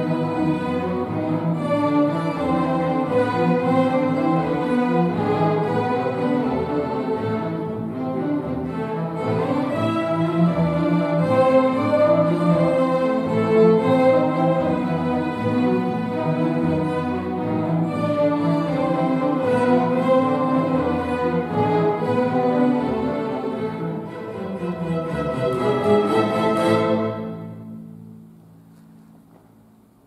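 A school string orchestra of violins, cellos and double basses playing a piece. It stops about three seconds before the end, and the last chord dies away over about a second.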